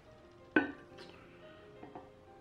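A ceramic pasta bowl set down onto a plate on the table: one sharp clink about half a second in, then a lighter tap about a second in, over quiet background music.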